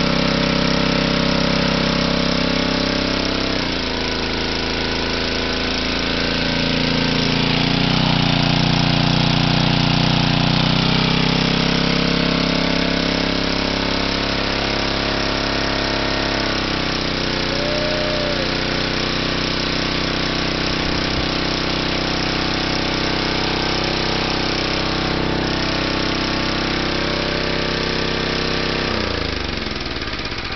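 A 10 HP small-engine generator, converted from gasoline to run on hydrogen through a fuel injector, runs steadily. Its speed dips and picks up a few times, loudest around a third of the way in, and it winds down and stops near the end.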